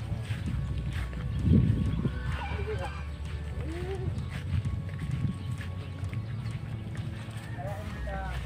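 Farmyard sounds: indistinct voices and a few short animal calls over a steady low rumble, with one louder low burst about a second and a half in.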